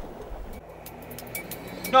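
A faint, steady low hum with light background noise, with no distinct event.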